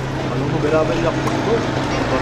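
Street ambience: other people's voices talking faintly in the background over a steady low hum.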